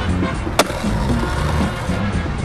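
Background music with a bass line, and one sharp skateboard impact about half a second in: the board landing after a jump.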